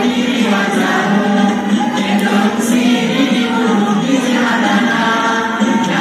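A crowd of women singing together in chorus, many voices in one continuous dance song.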